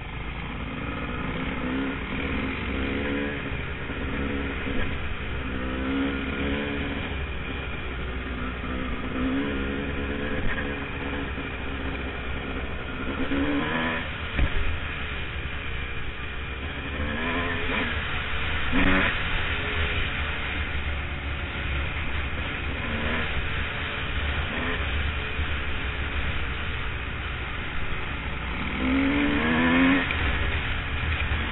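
Dirt bike engine on the camera bike, revving up and easing off again and again as it is ridden along a dirt trail. There are a couple of sharp knocks about halfway through.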